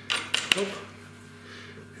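Small metal clinks of hex nuts being fitted onto the threaded studs of a steel table-leg corner bracket, a few sharp clicks in the first half-second.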